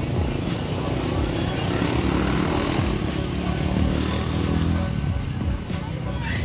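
A motor vehicle's engine passing on the street, building over the first couple of seconds and fading out about five seconds in.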